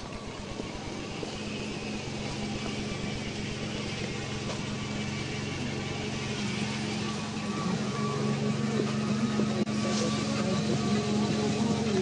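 A car engine idling with a steady low hum that grows gradually louder.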